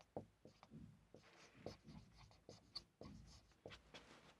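Marker pen writing on a whiteboard: a run of short, faint, irregular strokes and taps as letters are drawn.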